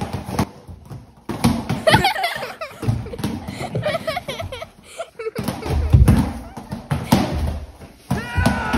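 Small foam mini footballs hitting and bouncing on a tile floor in a scatter of short, soft knocks, thickest near the end, with a person's voice sounding in between.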